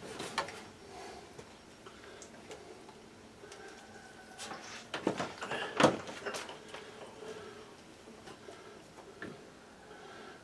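Scattered clicks and knocks from cords and fittings being handled against wooden greenhouse framing, with a few sharp, louder knocks about five to six seconds in.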